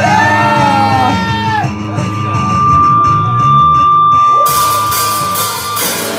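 Live rock band playing: guitar over a steady low bass line, a single high note held for about four seconds, and cymbals coming in about four and a half seconds in.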